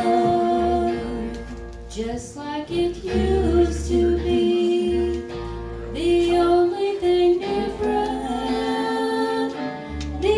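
Live country band playing a slow song through a PA, with electric guitar, a steady bass line and a woman singing held notes.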